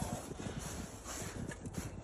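Footsteps on gravel and snow: a run of short, irregular steps.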